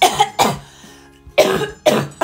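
A woman coughing hard in two pairs of short, harsh coughs, one pair at the start and the other about a second and a half in.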